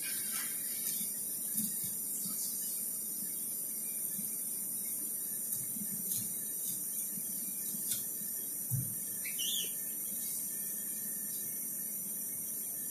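Faint scraping and light clicks of a chef's knife cutting along a whole hiramasa (yellowtail amberjack) on a plastic cutting board, over a steady background hiss. A brief high squeak rises and falls a little after nine seconds in.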